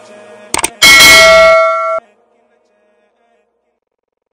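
Subscribe-animation sound effects: two quick mouse clicks, then a loud bell ding that rings for about a second and cuts off suddenly.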